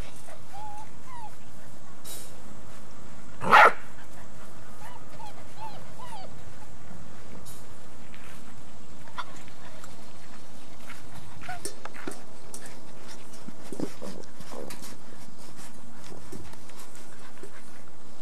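Labrador puppies whimpering with short high whines, and one short loud bark about three and a half seconds in.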